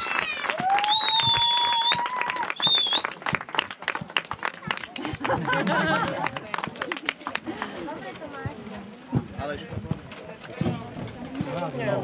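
A small outdoor crowd applauds with brisk hand clapping that thins out after about seven seconds. A few high, held whistle tones sound in the first three seconds, and scattered voices talk as the clapping fades.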